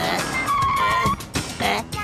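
Cartoon sound effect of a taxi pulling up and braking to a stop, with a brief high squeal of tyres about half a second in, over background music.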